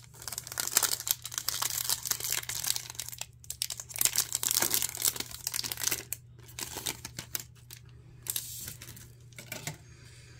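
Foil wrapper of a Garbage Pail Kids Chrome trading-card pack crinkling as it is torn open and the cards are slid out, in several bursts of crackling.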